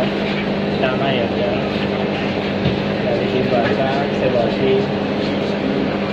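Voices of people talking, indistinct, over a constant busy background noise and a steady low hum.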